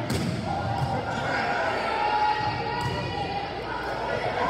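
A volleyball is struck with one sharp smack at the start, echoing in a gymnasium, followed by the shouts and voices of players and spectators during the rally.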